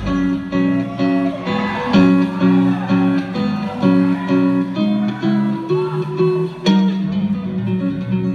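Live rock band's full sound drops away, leaving a guitar playing alone in a repeating picked chord pattern. A single sharp click sounds near the end.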